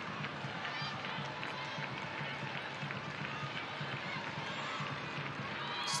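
Soccer stadium crowd noise: a steady crowd murmur with scattered distant voices calling out.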